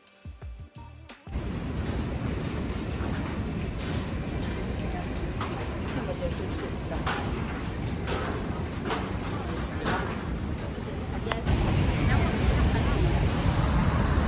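A steady outdoor rush of river water, with wind on the microphone and people's voices on a walkway, starting after a brief quiet moment at the end of some music. It grows louder near the end as the Iguazú Falls come close.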